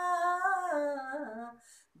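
A woman singing unaccompanied, holding the last note of a line of a Tagin gospel song; the note steps down in pitch and ends about one and a half seconds in, leaving a brief pause for breath.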